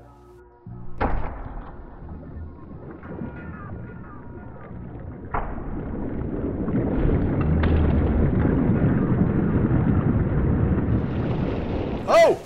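A hammer striking a block of clear ice, once about a second in and again around five seconds, each blow sounding low and drawn-out. A swelling low rush follows as the cracked block spills its trapped water, growing louder toward the end.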